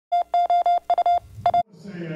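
Intro sound effect of rapid electronic beeps, all at one mid pitch, in quick irregular groups of short and slightly longer tones that cut off suddenly about a second and a half in. Room chatter from a crowd rises near the end.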